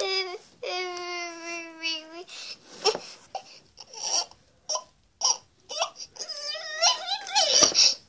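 A high, whiny baby-like crying voice: a long wail held on one pitch early on, then scattered short knocks and rustles, and broken wavering babble-like cries near the end.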